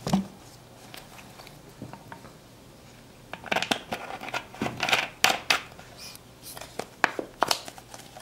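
An empty plastic soda bottle is knocked down onto a table, then a plastic screw cap is twisted onto its neck: a run of sharp clicks and scraping from about three seconds in to near the end.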